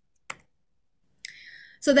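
A single sharp computer click a third of a second in, as the presentation slide is advanced. About a second later there is a softer click and a short breath, and a woman starts speaking near the end.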